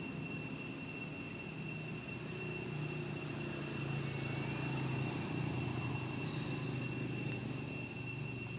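Outdoor ambience of insects holding several steady high-pitched tones, under a low distant engine drone that swells toward the middle and eases off again.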